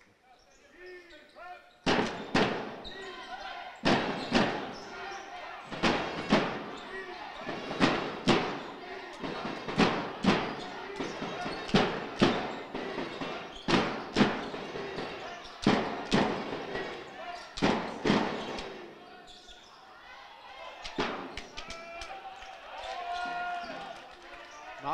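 Sound of a basketball game in a large sports hall. Loud thuds come in pairs every two seconds, a steady beat like crowd drumming, over voices and ball bounces on the court. The beat stops about three quarters of the way in, leaving softer crowd voices.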